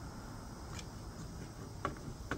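Metal swivel caster of a stretcher being screwed in by hand, its threaded stem turning in the leg on the caster's bearing: two faint clicks, one a little before a second in and a sharper one near the end, over a low steady outdoor rumble.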